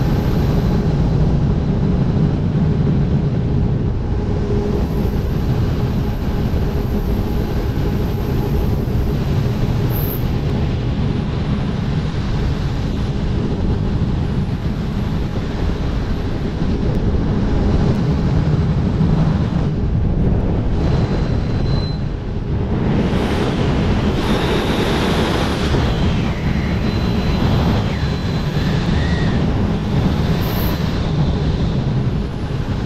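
Heavy, steady rush of wind buffeting a GoPro MAX's microphones as a wingsuit flies at speed. The rush turns brighter and hissier for several seconds near the end.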